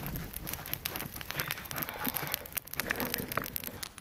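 Wood campfire crackling, with many small irregular pops and snaps.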